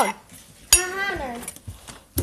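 A sharp clink of dishware about a third of the way in, followed by a child's short vocal sound that falls in pitch over about a second.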